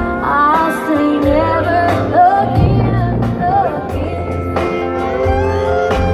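Live country band playing, with bass, drums and guitars under a wavering, sliding lead melody over the first few seconds, then held chords near the end.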